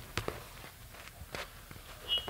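A few soft, irregular clicks and knocks: handling noise from a head-worn earset microphone being adjusted on the wearer's ear.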